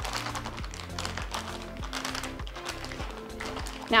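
Background music with a steady beat, over faint crinkling and tapping of a plastic zip-top bag as marinating meat is massaged through it.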